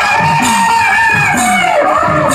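Live Bhojpuri bhajan music: a hudka (hourglass drum) beats a steady pulse of about two strokes a second, each stroke sliding down in pitch, under a high, wavering melody line that is held and bends up and down.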